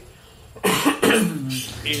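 A man coughs and clears his throat about halfway in, after a brief pause in his speech.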